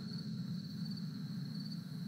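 Crickets trilling steadily in a night-time woods ambience, one continuous high-pitched tone, over a low background hum.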